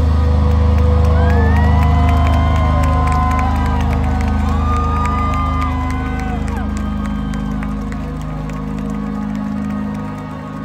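Low synth and bass drone held at the end of a metalcore song, with the crowd cheering and whooping over it. The drone fades slowly toward the end.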